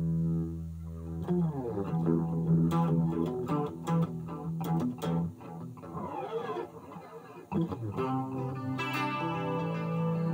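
Electric guitar played through effects. A steady low note sounds at first, then from about a second in comes a run of picked single notes with some sliding pitches, rising to brighter, higher notes near the end.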